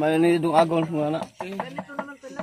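A person's voice held on one steady note for about a second, then several quick knocks or taps.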